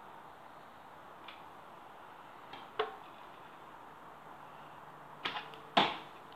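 Arrows striking homemade cardboard archery targets: short sharp thwacks, a faint one about a second in, a clear one near the middle, and two close together near the end, the last the loudest.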